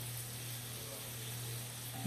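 Steady sizzle of food frying in hot fat on the stovetop, with a low steady hum underneath.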